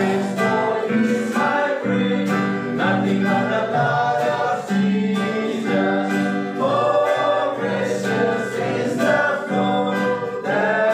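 A worship song sung to a strummed acoustic guitar, the voices carrying the melody over a steady strummed rhythm.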